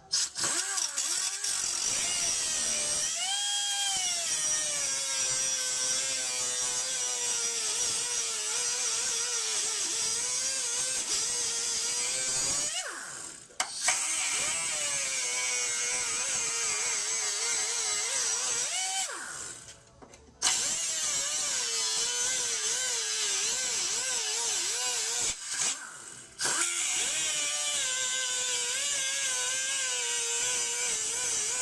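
Electric grinder cutting into a steel frame rail, slotting its bolt holes. Its motor pitch climbs as it spins up a few seconds in, then sinks and wavers as the disc bites into the metal; it stops briefly three times and starts again.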